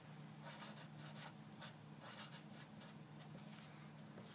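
Faint strokes of a Sharpie permanent marker writing on paper.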